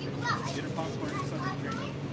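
Children talking and playing, their high voices coming in short phrases over a steady low hum.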